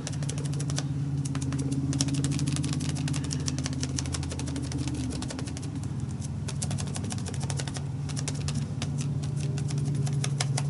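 Rapid tapping of a foam sponge dauber pouncing ink through a plastic stencil onto paper. Under it, the steady low engine drone of loud cars passing outside, shifting in pitch about halfway through.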